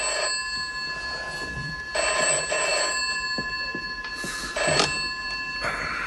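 A steady ringing with several high tones held together, broken by three short bursts of noise about two, four and a half and six seconds in.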